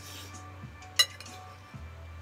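A metal spoon clinks once, sharply, against a plate about a second in while eating, over steady background music.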